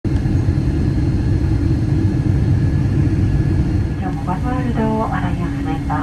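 Loud, steady low rumble of airport apron noise. From about four seconds in, people's voices and a steady hum join it.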